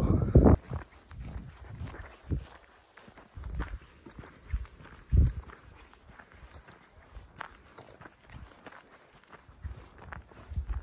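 Footsteps on a dry dirt trail, uneven and irregular, with a few louder thumps, the loudest just after the start and about five seconds in.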